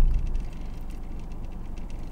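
Low steady hum inside a car's cabin, with a louder low rumble dying away in the first half second.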